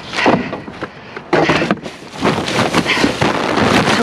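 Plastic snack bags and a large plastic trash bag crinkling and rustling as they are shifted around in a dumpster, in irregular bursts.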